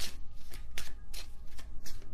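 A tarot deck being shuffled by hand: a string of short, irregular card clicks and rustles.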